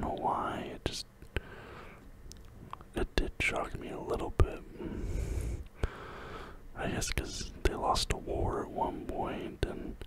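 A person whispering in soft phrases with pauses between them, with a few short sharp clicks scattered through.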